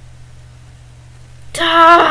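A low steady hum, then near the end a person's drawn-out vocal exclamation that falls in pitch.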